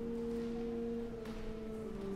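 Church organ playing soft, pure-toned sustained notes, moving to new notes about a second in.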